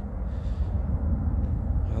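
Steady low outdoor rumble with no distinct event, the kind of background noise a phone microphone picks up outside.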